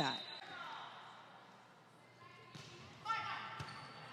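Faint ambience of an indoor volleyball gym, with faint calls from the court about three seconds in and a single ball strike near the end as the serve is hit.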